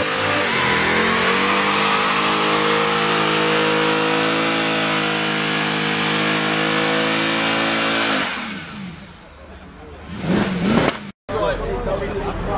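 Mercedes C63 AMG's V8 held at high revs for about eight seconds with a steady hiss over it, as the car does a stationary burnout with the rear tyres smoking. The revs then fall away, followed by a short burst of revs near the end.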